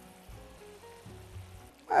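Soft background music of held notes, over a faint simmering of tomato sauce in a frying pan.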